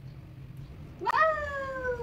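A high, drawn-out meow-like cry about a second in, rising sharply and then sliding slowly down in pitch.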